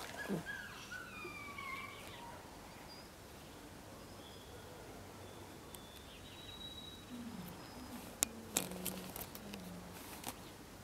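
A puppy making small play sounds during a tug game with a toy: high whines that fall in pitch in the first couple of seconds, and a low growl over the last few seconds. Two sharp clicks come a little after the middle of that growl.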